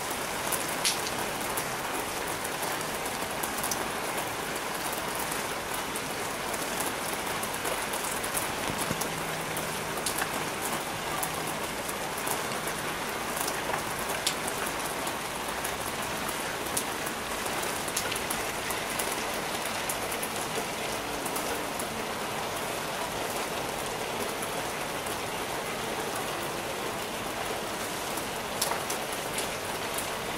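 Steady rain falling on a wet flat roof and balcony ledge, an even hiss with scattered sharper drop taps.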